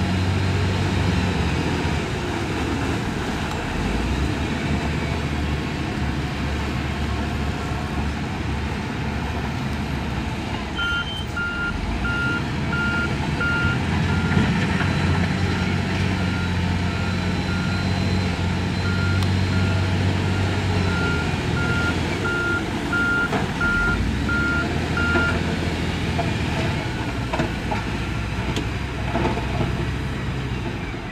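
Diesel engine of a wheel loader working, with its reversing alarm beeping at an even pace through the middle of the stretch. The engine runs steadily throughout and swells in load at times.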